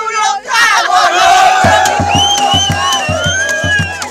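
A crowd singing carnival coplas breaks into one long, held collective shout, with a regular drum beat coming back in partway through.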